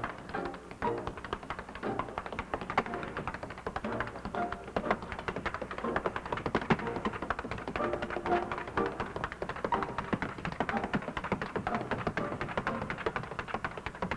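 Tap shoes clicking on a stage floor in quick, irregular rhythms over band music.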